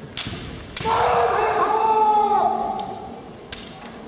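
Two sharp knocks from a kendo attack, bamboo shinai striking with a foot stamp on the wooden floor, followed at once by a loud drawn-out kiai shout lasting about two seconds, its pitch wavering. Two lighter knocks come near the end.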